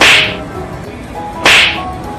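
Two sharp, swishing cracks, one at the start and one about a second and a half later, each falling in pitch, laid over background music.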